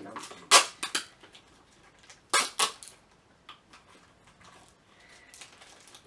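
A few sharp clicks and clacks of small hard plastic toy pieces being pried and snapped open, in two pairs within the first three seconds, then faint handling.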